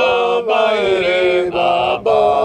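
Voices singing a hymn in Shona, in drawn-out phrases with short breaks about half a second in and again about a second and a half in.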